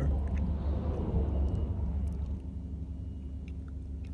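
Steady low rumble of a tow truck's running engine, heard from inside a car strapped onto its bed, with light rustling over the first two seconds or so.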